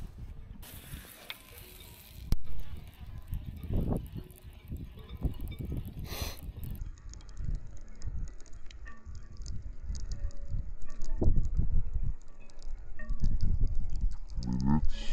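Wind rumbling on the microphone, with handling clicks and ticks from a baitcasting reel being cast and cranked. A sharp click comes about two seconds in.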